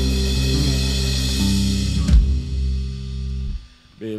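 Live band of acoustic guitar, electric guitar, bass and drums holding the final chord of a song, with a last drum and cymbal hit about two seconds in. The chord rings on and stops just before the end, leaving a short near silence.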